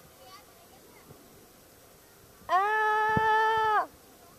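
One long, loud, held vocal call, like a person shouting or yelling a sustained 'aaah', starting about two and a half seconds in and lasting over a second at a steady pitch.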